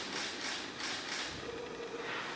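Camera shutter firing repeatedly, a few sharp clicks a second.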